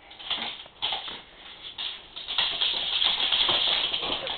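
Dogs' claws clicking and scrabbling on a tile floor as they scuffle in play, a dense run of quick clicks and scrapes that grows louder about halfway through.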